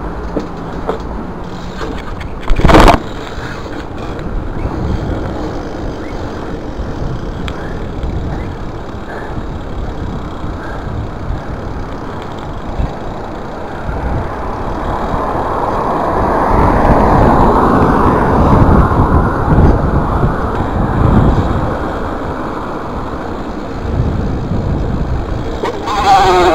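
Bike riding heard from a chest-mounted action camera: tyres rolling over concrete and asphalt with rushing noise on the microphone, swelling louder for several seconds past the middle. A single loud clunk comes about three seconds in.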